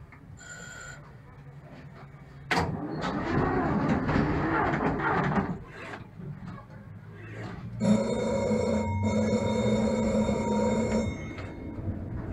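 Konstal 803N tram in its cab at a stop: a short high beep, then a sudden loud rush and clatter for about three seconds. Then its electric bell rings steadily for about three seconds, with a brief break, before the tram moves off.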